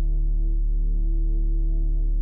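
Ambient meditation music: a steady, low drone of sustained tones with deep bass, with no strikes and no beat.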